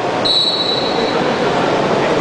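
Wrestling referee's whistle: one steady high blast starting just after the beginning and lasting under a second, over the murmur of a crowd in a hall.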